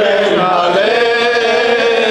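A man chanting a Shia mourning elegy (rouwzang) into a microphone, holding one long, nearly level sung note from about half a second in.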